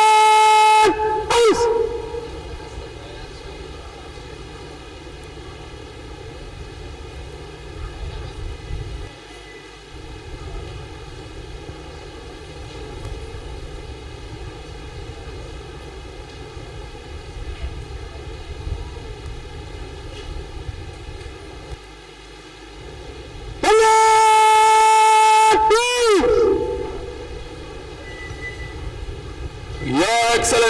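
Long, loud blasts on a horn, each a single held note of about two and a half seconds with a bend in pitch as it starts and stops. One blast ends just after the start and a second sounds about 24 seconds in. Between them there is steady open-air background noise.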